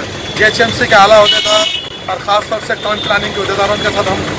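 A man speaking over street traffic noise, with a short, high, steady tone about a second and a half in.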